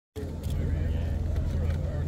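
Wind rumbling on the microphone in a steady low roar, with faint voices of people talking under it.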